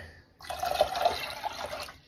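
Water poured from a glass measuring cup into a stainless steel saucepan that already holds some water, a steady splashing pour starting about half a second in and tapering off near the end.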